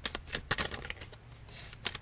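A tarot deck being shuffled by hand: a quick, irregular run of clicks and snaps from the card edges, thinning out after about a second.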